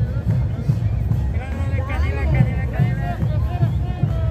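Kantus music from an Andean folk troupe: large drums beat about twice a second under panpipe playing, with voices heard over it.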